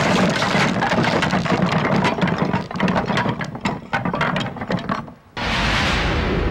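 Crashing and cracking of a wooden building collapsing, with timber and debris clattering down in a thick run of snaps that thins into scattered cracks and stops abruptly about five seconds in. A steady low rumble starts right after.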